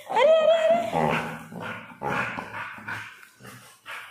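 A dog vocalizing while tugging a toy in play: a drawn-out whining sound over about the first second, then shorter, broken sounds that fade away.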